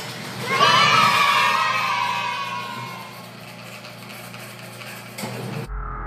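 A cheer of high voices starts about half a second in and fades away over the next two seconds. Near the end it cuts suddenly to music with a deep low tone.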